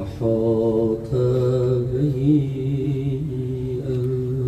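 A man chanting a Muharram mourning recitation (rawda) without clear words, in drawn-out melodic notes: one short phrase, then a long held note from about a second in, with a slight waver in its middle.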